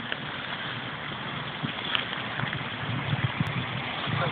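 Steady rush of water pouring through a canal weir, with a few low thuds in the second half.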